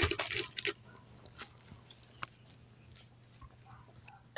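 Quiet handling of a catheter tube and its plastic packaging: a few soft crinkles and rustles in the first second, then a single sharp click about two seconds in, over a faint low hum.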